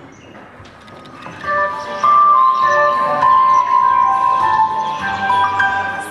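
Quiet for about a second and a half, then a song's instrumental introduction starts: a bright melody of clear, held notes, loud from about two seconds in.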